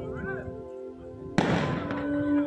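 A single black-powder blank gunshot cracks once about one and a half seconds in and dies away quickly, over steady sustained tones in the background.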